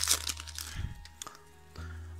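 Foil booster-pack wrapper crinkling as the pack is held open and the cards are slid out, the rustling thinning out after about the first second.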